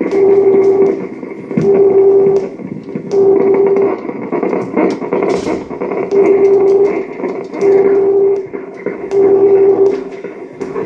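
Live experimental electronic noise music: a loud, steady droning tone pulses on and off about every second and a half over a crackling, noisy bed, with a short burst of hiss near the middle.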